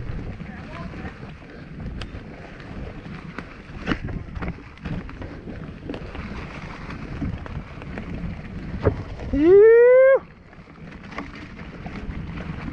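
Mountain bike rolling over a rough dirt trail: a steady rumble with rattles and knocks, and wind on the microphone. About two-thirds of the way through, a rider lets out a loud rising whoop.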